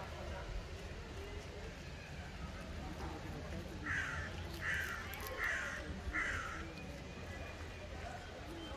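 A crow cawing four times in an even series, harsh calls a little under a second apart, starting about halfway through.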